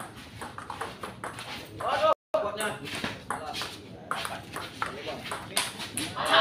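Table tennis rally: a celluloid ball clicking sharply off paddles and table in quick succession, with voices shouting around two seconds in.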